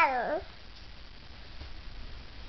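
A baby's drawn-out, high-pitched vocal sound that glides down in pitch and stops about half a second in, followed by quiet room tone.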